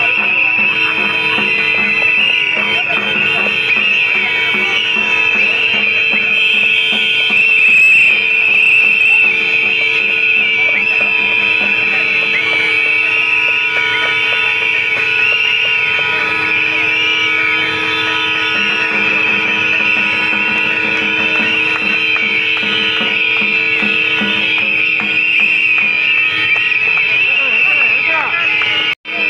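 A large crowd whistling together: many finger whistles overlap into one continuous shrill chorus of wavering high pitches, with crowd voices underneath.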